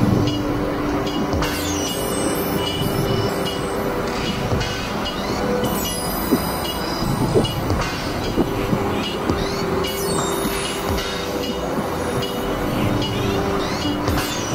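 Experimental electronic drone music: held synthesizer tones under high, sweeping screeching sounds that return about every four seconds, with scattered sharp clicks.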